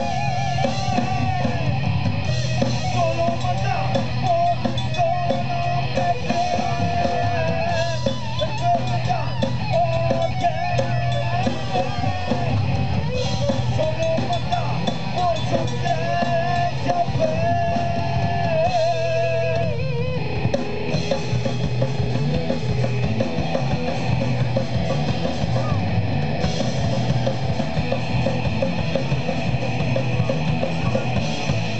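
Live rock band playing: electric guitar and drum kit, with a wavering lead melody over the first two-thirds and a change of section about two-thirds of the way through.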